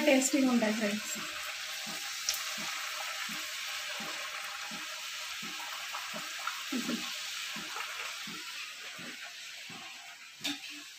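Battered snacks deep-frying in a kadai of hot oil, a steady sizzle as they are stirred and turned with a slotted spoon. The sizzle eases a little near the end.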